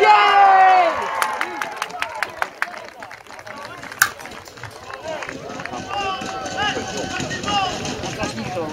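Footballers' celebration of a goal: a loud shout that falls in pitch over about a second, then scattered sharp claps and a knock, and further shouts and calls from the players in the second half.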